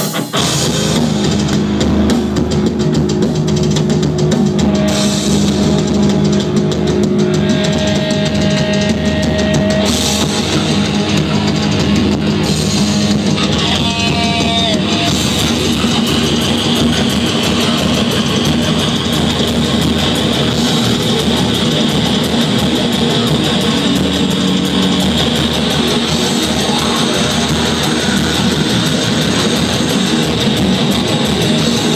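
Live heavy metal band playing loud: distorted electric guitars over a drum kit. The full band comes in at the start of the song and plays on without a break.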